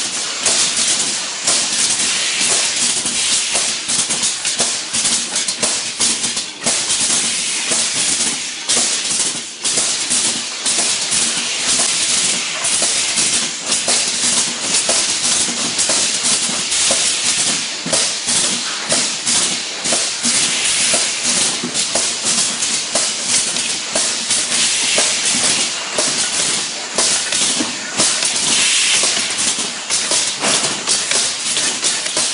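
Automatic aerosol can filling line running: a steady hiss of compressed air with rapid, irregular clicking and clattering of metal cans and pneumatic parts.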